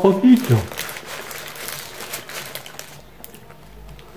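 A man's appreciative "mmh" hum at the start while eating a kebab, then soft crinkling and handling noise as he brings the kebab up and bites into it near the end.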